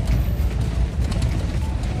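Motorhome driving over a cobblestone street, heard from inside the cab: a steady low rumble from the tyres on the stones, with faint clicks and rattles from the shaking cabin.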